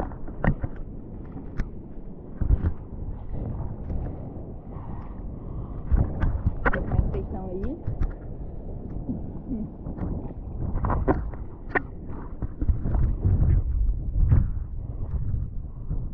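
Sea water splashing and sloshing close to an action camera in its waterproof housing, with low rumbling buffets and frequent knocks from hands handling the camera.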